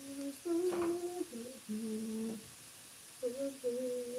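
A woman humming a tune in a series of held notes that step up and down in pitch, pausing for a moment in the middle.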